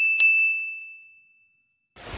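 Notification-bell 'ding' sound effect of an animated subscribe button: a single bright chime, struck again just after the start, ringing and fading away over about a second and a half.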